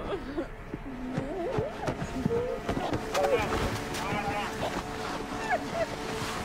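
Several indistinct, overlapping voices over a quiet, sustained film music score.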